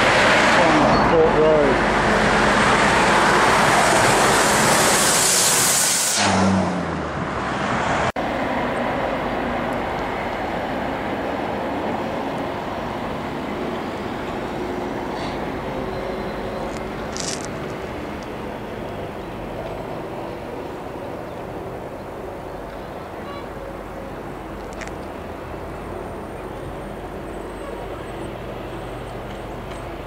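Road traffic on a busy arterial road: a heavy truck's diesel engine working and passing close, loud and shifting in pitch for the first six seconds. After a sudden change about eight seconds in, it gives way to a steadier, quieter traffic hum.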